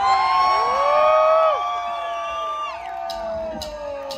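Electric guitar holding notes that bend up and down through an echo, several overlapping tones that slowly slide lower.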